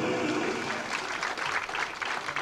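Theatre audience applauding as a song's final held note dies away about a quarter of a second in.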